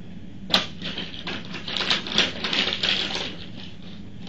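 Paper being handled on a tabletop: one sharp click about half a second in, then a run of rustling, crinkling and small taps that dies down near the end, over a steady low hum.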